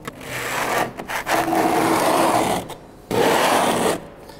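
A hand scraper dragged across the hardened first coat of a crushed-marble concrete overlay, knocking down the rough peaks before the next coat: three scraping strokes, the middle one the longest.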